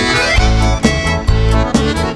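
Instrumental break of a dance-band song: a piano accordion plays the lead melody over bass and a steady beat of about two hits a second.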